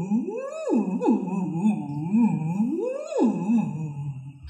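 A woman phonating through a drinking straw in a semi-occluded vocal tract (straw phonation) warm-up, sliding her voice up and down her range. It makes two big sweeps that rise high and fall back low, with small wavers low down between them.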